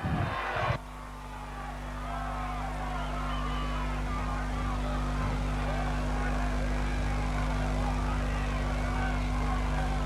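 Crowd chatter, many indistinct overlapping voices, heard faintly under a steady electrical mains hum. A louder sound cuts off under a second in.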